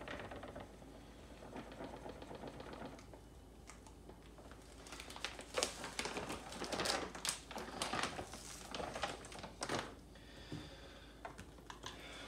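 Faint pouring of granulated sweetener from a plastic pouch into a stainless steel bowl, then several seconds of plastic pouch crinkling and light clicks as it is handled and put down.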